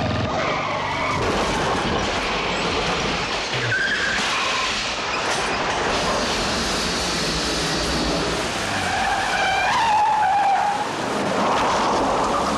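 Vehicle chase sound effects: engines running over a wash of road noise, with tyres squealing in several short skids, the longest around nine to ten seconds in.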